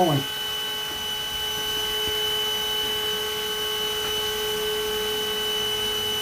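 Steady electric motor hum with a constant high whine, unchanging in pitch and level.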